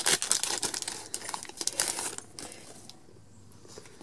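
Foil Pokémon trading-card booster pack wrapper crinkling as it is torn open. The crackle is dense over the first two seconds and dies down after.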